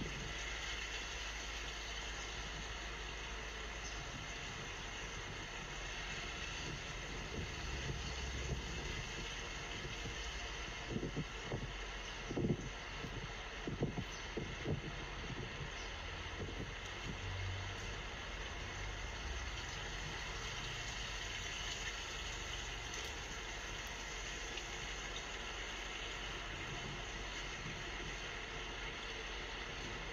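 Steady outdoor city background noise with no clear single source. A few short low thumps of wind buffeting the microphone come around the middle.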